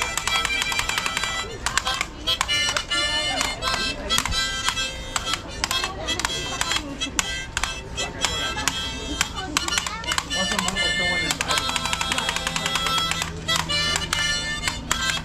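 Harmonica played live, a run of bright chords and notes in quick rhythm with short breaks between phrases.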